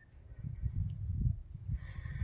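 Wind buffeting the microphone on an exposed mountaintop: an uneven low rumble that swells and fades.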